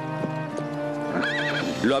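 A horse gives a short whinny about a second in, after a few hoofbeats, as it dodges a jump, over steady background music.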